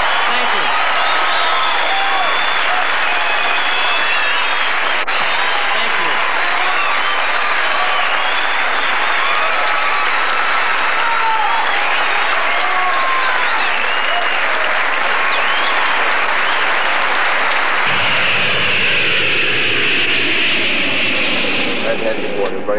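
Large audience applauding and cheering, with shouts and whistles throughout. About 18 seconds in it cuts abruptly to steady airliner cabin noise.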